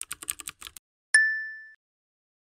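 Typing sound effect: a rapid run of keyboard-like clicks lasting under a second, then a single bright ding that rings out and fades over about half a second.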